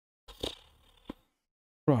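A short breath into a close microphone, then a single small mouth click, between silences.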